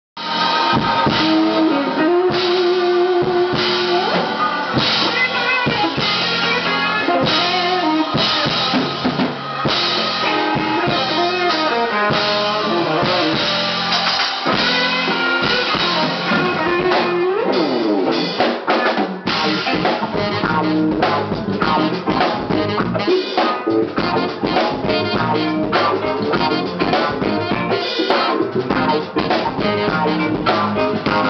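A live band playing: drum kit, electric bass, electric guitar and saxophone, with held melodic notes through the first half, a sliding pitch bend a little past halfway, and a busier, choppier rhythm toward the end.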